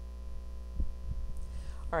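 Steady low electrical mains hum on the recording, with a couple of faint low thumps about a second in.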